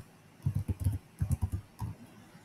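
Typing on a computer keyboard: quick keystrokes in three short bursts, with brief pauses between them.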